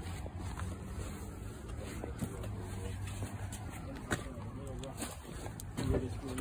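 A low steady rumble with faint voices in the background and a couple of short clicks.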